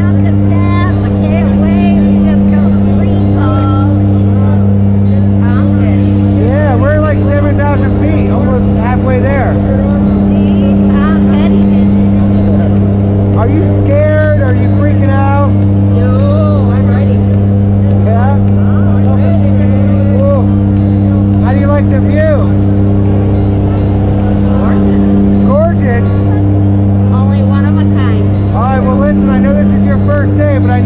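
Propeller engines of a skydiving jump plane droning steadily inside the cabin during the climb: a loud low hum that swells and fades slowly. Indistinct voices or music sit over the drone.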